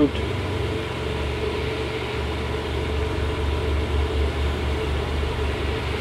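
Boat engines idling as the boats creep forward at low speed: a steady low hum that pulses slightly.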